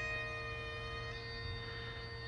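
Bagpipes played at a distance: a steady drone under the chanter's melody, with a change of note about a second in.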